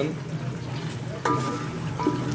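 Chicken and ground spices sizzling as they fry in an aluminium pot, stirred with a wooden spoon to keep the red chili from burning.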